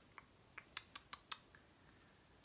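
Faint light clicks and taps, about six in just over a second, as a wooden ruler is handled against the edge of a hard plastic tray.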